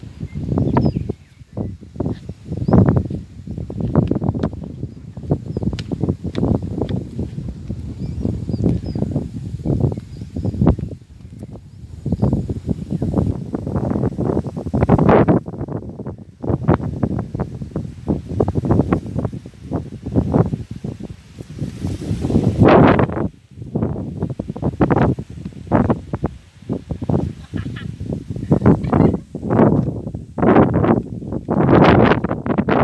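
Wind buffeting a phone's microphone in irregular gusts, a rumbling rush that swells and drops every second or so, with one sharper, brighter gust a little past the middle.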